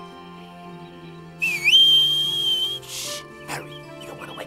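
Cartoon whistle sound effect about a second and a half in: a high whistle that dips, then rises and holds steady for over a second, followed by a short hiss, over soft background music.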